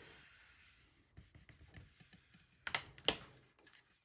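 Quiet handling of cardstock pages, with faint rustles and small ticks. Two sharp clicks come close together a little under three seconds in and just after three.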